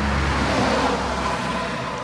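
A motor vehicle passing on the road, a steady rush of engine and tyre noise with a low rumble that eases off toward the end.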